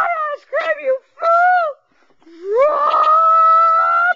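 A child's high voice making wordless sounds: three short wavering cries, then a long rising howl held for about a second and a half.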